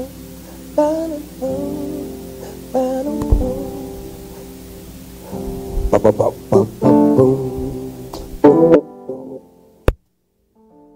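A live gospel band's electric guitar and keyboards pick out a melodic lick in loose, halting phrases, working out the song's guitar riff. A quicker run of notes comes in the second half, then the sound stops abruptly.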